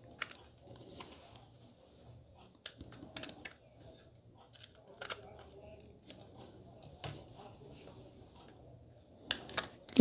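Scattered light clicks and taps of a small screwdriver on the screws and thin metal drive caddy as an SSD is screwed into the caddy.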